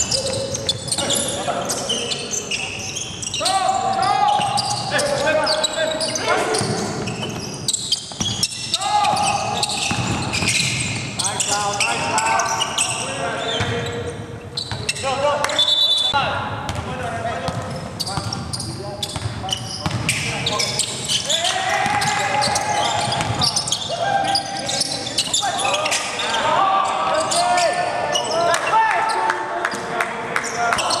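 Live court sound of a basketball game on a hardwood floor: the ball bouncing, sneakers squeaking, and players calling out indistinctly, all echoing in a large hall.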